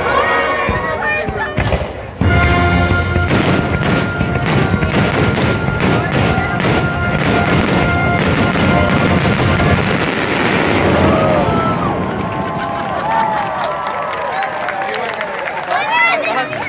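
A fireworks finale barrage: shells bursting in rapid succession over loud show music. About eleven seconds in the bursts die away and crowd cheers and whoops take over.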